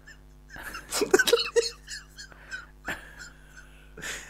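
Brief squeaky vocal sounds, bunched about a second in, over a steady low electrical hum.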